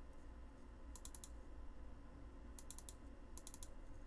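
Faint computer mouse clicks in three short runs of quick clicks, about a second in and twice near the end, as files and a program are opened.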